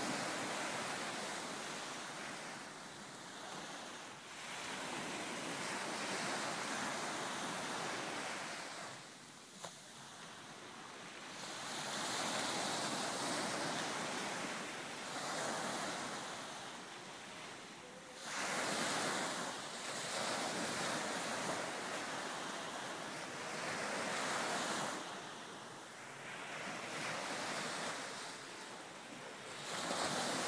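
A rushing noise like surf washing in, swelling and ebbing in slow surges about every six seconds, with no music.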